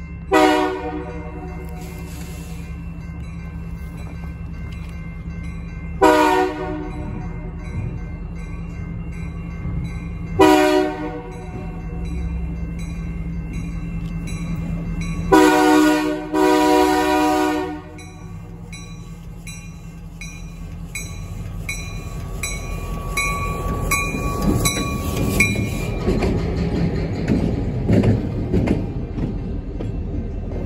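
Diesel locomotive's multi-tone air horn sounding the grade-crossing signal: two long blasts, a short one and a final long one, over the regular ringing of the crossing bell. Then the locomotive's diesel engine and wheels rumble louder as it rolls through the crossing.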